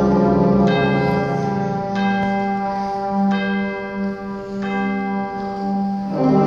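Tubular chimes struck four times, about one and a quarter seconds apart, each stroke ringing on over a concert band's held chord.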